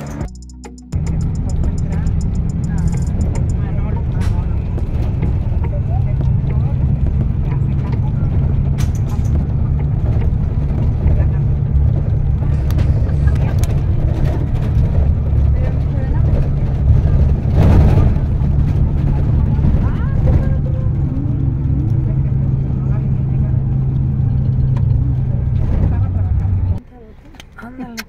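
Bus engine drone and road rumble heard inside the passenger cabin, steady and low, with scattered rattles and knocks. It stops abruptly about a second before the end.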